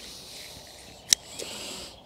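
Scissors snipping once through leek leaves about a second in, a sharp click, with the leaves rustling in the hand around it.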